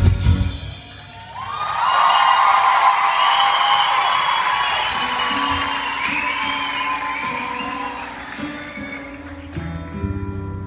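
A live band's song ends on a last drum hit, then the concert audience applauds and cheers with whistles, swelling about a second and a half in and slowly fading. Low held instrument notes come in quietly about halfway through.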